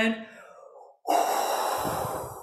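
A woman's forceful, guttural exhalation blown out through pursed lips: the breathy 'earth element' healing sound used to blow worry out of the stomach. It starts suddenly about a second in, with a rasp in the throat, and fades away over the next two seconds.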